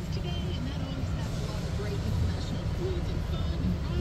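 Steady low rumble with faint, indistinct voices in the background.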